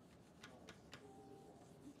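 Near-silent room tone with three faint ticks about a quarter second apart, a marker tapping against a whiteboard as it writes.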